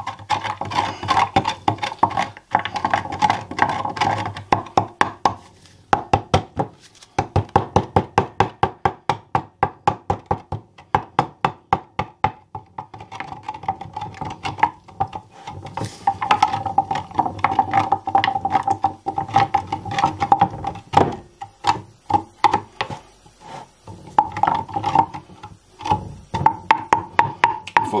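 Wooden spoon stirring caustic soda into water in a glass jug, knocking against the glass in a quick steady run of clacks, about four a second, with a ringing tone from the jug; the stirring pauses briefly a few times.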